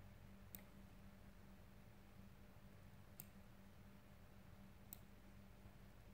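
Near silence with a faint steady low hum, broken by three faint clicks from a computer's pointing device, about half a second, three seconds and five seconds in.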